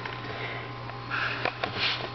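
A person sniffing through the nose, two short breathy sniffs about a second in and near the end, with a few faint handling clicks over a low steady hum.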